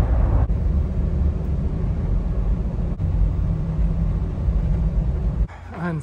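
Steady low rumble of road and engine noise inside a car cruising at freeway speed. It cuts off suddenly near the end.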